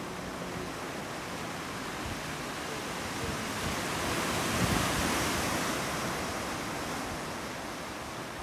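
Ocean surf washing onto a beach, a steady rush that swells with one wave about halfway through and then fades back.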